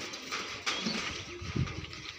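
Brief animal calls with a few knocks and low thumps.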